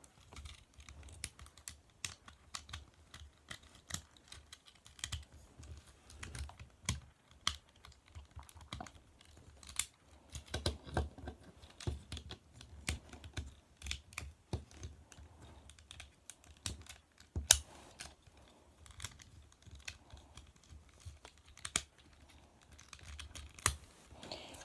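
Irregular small plastic clicks and taps as the joints and panels of a Transformers Studio Series Jazz figure are folded and snapped from robot mode into its car mode, with soft handling knocks.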